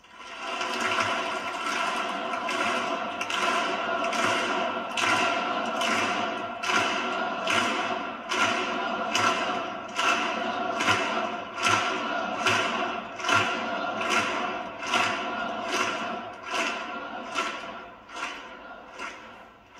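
A large audience clapping together in a slow, steady rhythm, a little under one clap a second, over a steady held tone underneath.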